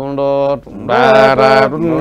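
A man singing unaccompanied in long held notes, three sustained phrases with a short break about half a second in, the pitch stepping up for the second phrase.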